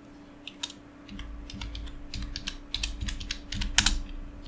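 Computer keyboard typing: a quick, irregular run of keystrokes as a word is entered, with the loudest strikes near the end.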